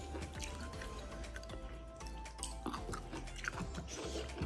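Close-up eating sounds: chewing and small wet clicks of boiled chicken and rice being eaten by hand, over soft background music with held notes.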